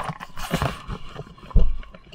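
Car seatbelt being pulled across and fastened, with a nylon jacket rustling and several small clicks and knocks, and a dull thump about three-quarters of the way through.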